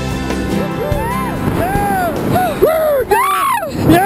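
Excited wordless whoops and yells from two people, short high cries that rise and fall in pitch, the loudest near the end, over background music that fades out within the first second.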